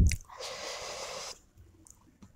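Close-miked chewing of a momo, wet and deep, that stops just after the start. A steady breathy exhale through the mouth lasting about a second follows.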